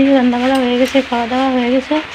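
A woman singing in long held notes, with the steady sizzle of frying underneath.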